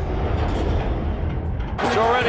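Logo-animation sound effect: a deep cinematic boom dying away in a heavy low rumble. Near the end it cuts abruptly to the noisy sound of a basketball game broadcast.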